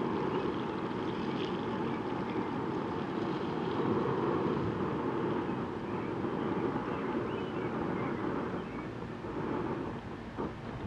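Breaded mountain oysters deep-frying in a skillet of hot oil on a propane burner: a steady sizzle that eases slightly near the end.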